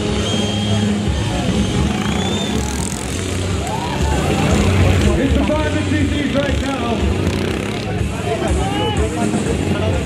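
Royal Enfield single-cylinder motorcycles running on a dirt course, steady, swelling slightly about halfway through, with a mix of crowd voices and announcements over them.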